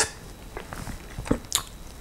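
Pause in a man's speech, with a few short, soft mouth clicks and breath noises in a small quiet room.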